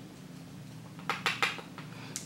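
Makeup brush being loaded with loose translucent powder from the back of a makeup container: a quick run of five or six light clicks and taps about a second in.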